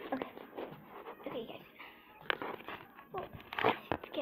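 A child's voice talking indistinctly, with sharp handling knocks close to the microphone, one a little over two seconds in and a louder one near the end.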